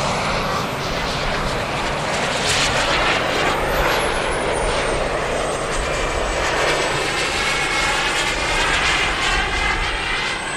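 Radio-controlled model jet's small gas-turbine engine as the jet flies past: a steady rushing jet noise with a thin high whine. The whine rises in the first second, falls in pitch over a couple of seconds about three seconds in, then holds steady.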